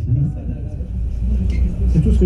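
A live jazz band plays in a small club. A low, steady bass rumble is the loudest part, with fainter sung or blown phrases between louder ones.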